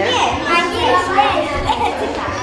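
Children's voices talking, with no other sound standing out.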